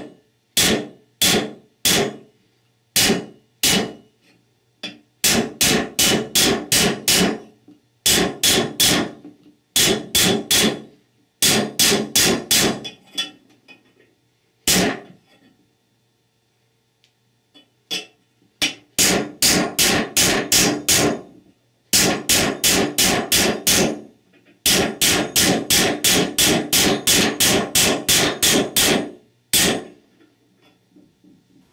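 Ball-peen hammer striking the stem of an engine intake valve used as a driver, tapping a new extension housing bushing into its bore in a Chrysler 46RE transmission's extension housing. Sharp metallic blows come singly about a second apart at first, then in quick runs of about five a second, with a pause of a few seconds midway.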